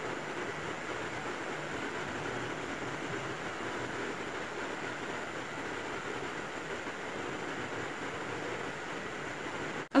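Steady, even background hiss with no distinct events, cutting off abruptly just before the end.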